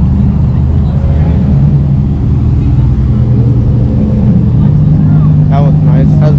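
Nissan 350Z 3.5-litre V6 engines and exhausts running at low revs as the cars roll slowly past. The steady low drone strengthens and rises slightly about four and a half seconds in, as the dark blue car comes by.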